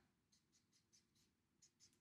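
Near silence, with faint short strokes of a marker on chart paper: tally lines being drawn one after another.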